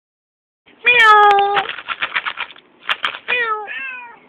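Orange tabby tomcat meowing: one long meow about a second in that dips slightly at its end, then a quick run of short clicking pulses, then two shorter meows near the end.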